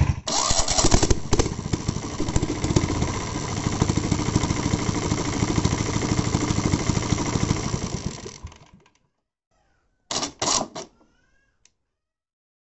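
Single-cylinder air-cooled diesel engine of a diesel-converted Royal Enfield Bullet starting up and running steadily, then shutting off and dying away about eight and a half seconds in.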